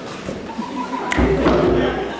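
A heavy thump about a second in, followed by a deep rumble with a wordless voice-like cry over it, echoing in a large hall.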